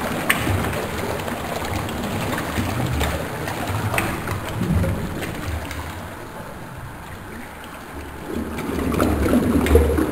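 A toilet flushing: water rushing and swirling in the bowl as it drains. It turns quieter just past the middle and swells again near the end.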